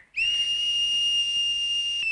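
Speaking-tube whistle blown from the far end: one long, steady, high whistle that starts a moment in, a call for someone to answer the tube.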